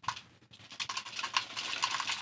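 Dry loose-leaf tea pattering and rattling into an empty plastic bottle as it is poured from a paper packet, an irregular stream of small ticks that grows denser after about half a second.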